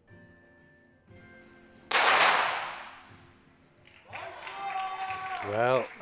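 .22 sport pistol shot about two seconds in: one sharp crack that echoes and fades over about a second, over faint background music.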